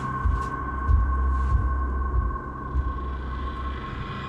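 Low rumble with irregular soft bumps from a handheld phone being moved and carried, under a steady high-pitched two-note hum.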